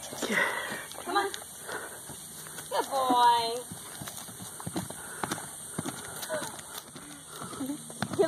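A loose horse trotting and cantering across a dirt paddock, its hooves giving scattered dull knocks on the ground.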